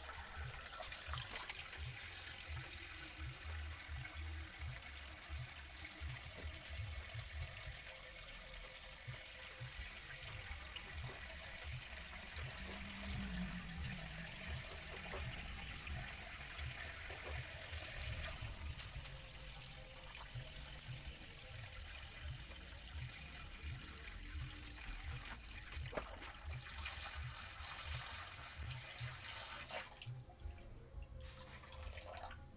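Water pouring steadily from a plastic hose into a small rock-lined pool, splashing as the pool fills.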